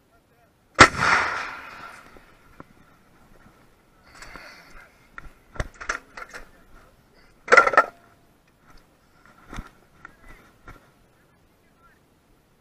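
An M777 155 mm towed howitzer fires one round about a second in: a single loud blast with a rolling tail of about a second. After it come scattered short metallic knocks and clanks, the loudest a little past halfway.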